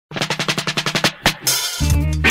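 Drum-roll intro of a 1970s-style roots reggae single: about a second of rapid, evenly spaced drum strokes, then one harder hit and a cymbal wash. The bass and band come in near the end.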